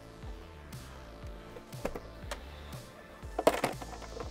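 Soft background music, with a few knocks and bumps from an Asus all-in-one PC's case as it is handled and turned over. The loudest is a short cluster of knocks about three and a half seconds in.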